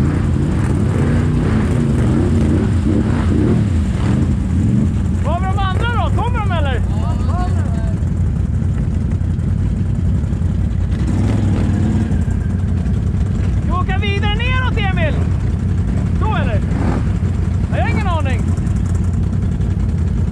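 ATV engine running steadily at low revs, an even, deep drone that holds through the whole stretch. A voice calls out briefly a few times over it.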